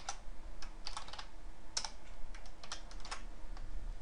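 Typing on a computer keyboard: a run of irregular single keystrokes.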